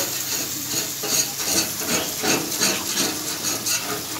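Thin marinated beef steaks sizzling on a hot flat-top griddle, with a metal spatula scraping over the griddle surface in short repeated strokes, about three a second, as the meat is worked.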